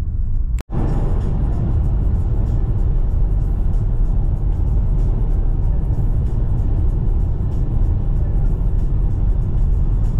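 Steady low rumble of a car driving at highway speed, heard from inside the cabin. The sound cuts out for an instant about half a second in, and after that music plays over the road noise.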